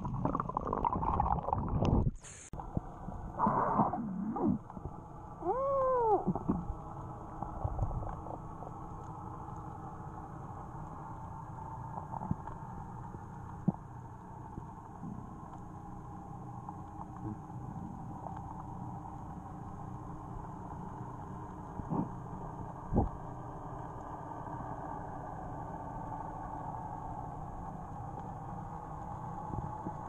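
Underwater sound from a camera held below the surface during a freedive. Water churns and splashes in the first couple of seconds as the diver goes under, and a few gurgling sounds bend up and down in pitch a few seconds in. After that comes a steady, muffled underwater hiss with a few scattered clicks.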